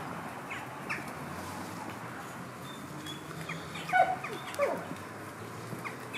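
Two short, high-pitched animal cries about four and four and a half seconds in, over scattered faint chirping.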